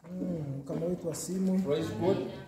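Speech only: a man talking, loud and emphatic, in words the recogniser did not write down.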